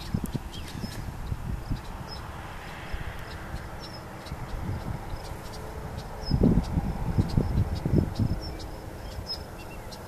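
Small birds chirping in short repeated high calls over wind rumbling on the microphone, with a run of louder low thumps and gusty rumble about six seconds in.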